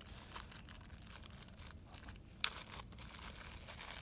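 Plastic bubble wrap crinkling faintly and irregularly as it is handled, with one sharper click about two and a half seconds in.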